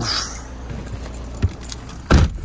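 Someone climbing into a car's driver seat: a jingle of keys and rustle right at the start, then a sharp knock about one and a half seconds in, over a low steady rumble.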